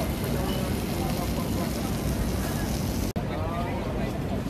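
Busy street-market ambience: a steady low rumble with faint voices of people talking. A brief dropout about three seconds in, after which the same ambience carries on.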